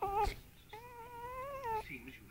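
A young pet crying twice: a short cry right at the start, then one long cry about a second long that rises gently in pitch and drops off at the end.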